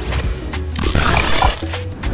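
Intro jingle music with a heavy bass beat and sharp hits, with a noisy, roar-like sound effect swelling up about a second in.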